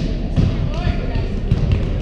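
A few echoing thuds as a volleyball is played, struck and bouncing, in a large gym with a hardwood floor, over the background voices of players in the hall.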